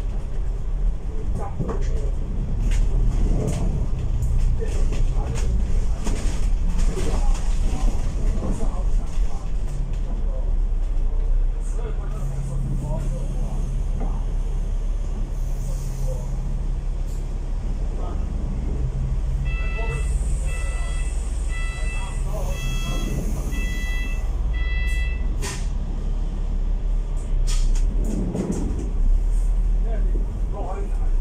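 Inside an Alexander Dennis Enviro500 MMC double-decker bus moving in city traffic: steady low engine and road rumble, with a steadier drone partway through. Around twenty seconds in comes a run of about six short electronic beeps, less than a second apart, with a couple of brief hisses near them.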